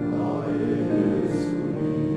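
Men's choir singing sustained chords, with a hissed "s" sound about one and a half seconds in.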